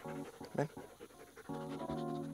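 A Belgian Shepherd dog panting, tired and overheated in heat of about 37 °C, over background music of short held notes that is loudest near the end.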